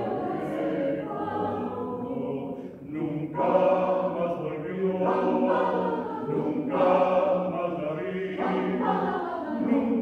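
Mixed choir singing a choral arrangement of a tango a cappella, holding sustained chords in several voice parts. A short dip just before three seconds in, after which the singing comes back louder.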